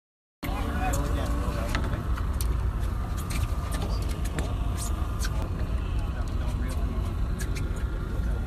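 Steady low rumble aboard a small fishing boat, with people's voices in the background and scattered sharp clicks.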